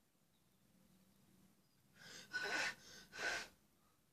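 Three short, breathy puffs of a person's breath about halfway through, after a near-quiet start.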